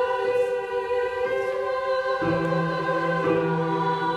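Choir singing a slow piece in long held chords, on a first read-through. About halfway through, the chord changes and a lower part comes in.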